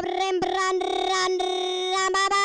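A high-pitched singing voice holding long, steady notes, with only brief breaks between them.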